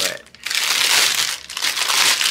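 Clear plastic wrap crinkling loudly as hands handle and pull it open from around a wrapped package, starting about half a second in.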